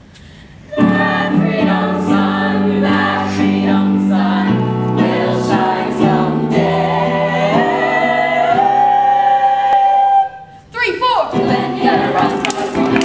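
A stage chorus of mixed voices sings a gospel-style show tune over instrumental accompaniment. The singing comes in after a short pause just under a second in, and builds to a long held note. After a brief break near the end, a livelier section starts with sliding voices.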